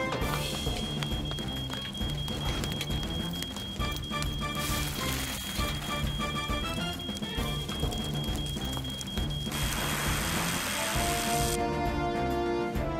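Cartoon sound effects of a dense crackling and scraping, like fire crackling or sand being shovelled, over quiet background music, with a short burst of hiss near the end.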